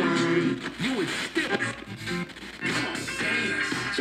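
Music from an FM radio station, played by the Tyler TCP-02 portable cassette player's radio and heard through a small Bluetooth speaker.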